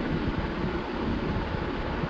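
Steady rushing background noise in a small room, with an uneven low rumble underneath.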